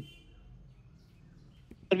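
Quiet room tone in a pause between a man's speech, which ends at the start and picks up again near the end.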